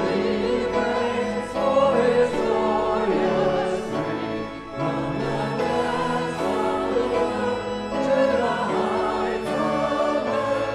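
A congregation singing a hymn with instrumental accompaniment, the voices moving from note to note in phrases with short breaths between them.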